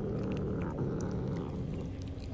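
A cat's low, drawn-out growl while cats feed on fish scraps, a warning over its food, fading out near the end.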